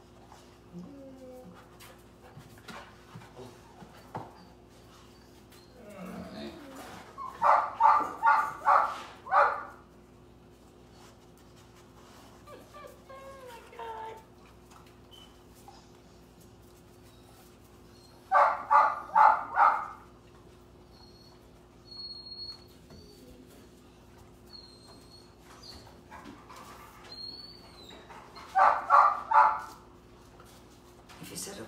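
A dog barking in three quick runs of four or five barks, about a third of a second apart, with faint whining between the runs.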